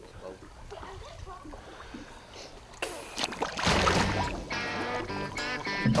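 Lake water splashing and sloshing around people in the water, loudest about three to four seconds in. Guitar music then starts over it.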